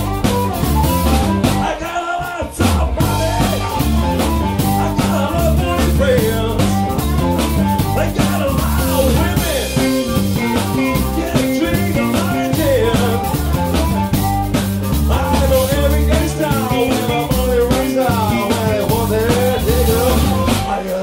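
Live blues-funk band playing an instrumental passage: drum kit, bass guitar and electric guitar under an amplified blues harmonica playing bending lines, with a brief break in the band about two seconds in.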